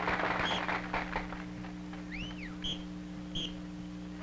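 A few faint, short, high whistle toots and one quick rising-and-falling whistle over a steady low hum, while a noisy din fades out in the first second or so.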